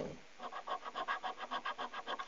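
A coin scratching the latex coating off a Super 7s scratchcard in quick, even strokes, about ten a second, starting about half a second in.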